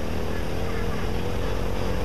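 Steady drone of motor-vehicle engine and traffic noise, with a faint steady hum over it.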